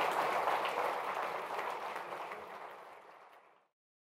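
Audience applauding, a dense patter of many hands clapping that fades out over the last couple of seconds and ends in silence a little before the end.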